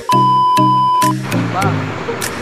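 A steady, high test-tone beep held for about a second, the TV colour-bars sound effect of a glitch transition, over background music with a beat. A short rising-and-falling blip follows about a second and a half in.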